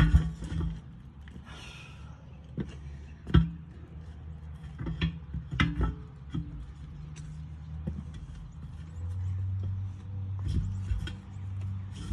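Sharp metallic knocks and clanks as a Vevor manual tire tool's steel bar is worked against the rim and bead of a rusty truck wheel, heaviest in the first half. Under them runs a steady low hum that grows a little stronger near the end.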